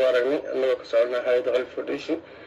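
Only speech: a woman speaking.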